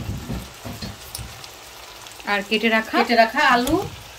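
Beef curry sizzling in a wok, with a few soft knocks in the first second and a half as potato chunks go into the pan. A person's voice is heard over it in the second half.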